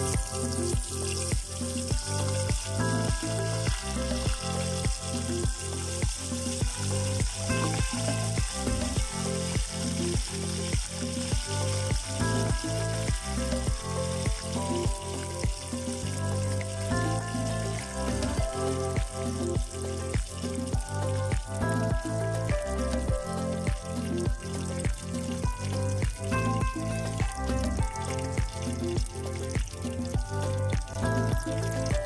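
Breaded chicken strips deep-frying in hot oil in a pot, giving a steady sizzle. Background music with a regular beat plays over it.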